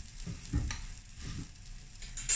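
Paratha sizzling on a hot flat griddle (tawa), with a few soft knocks from the spatula handling it during the first half and again shortly after one second in.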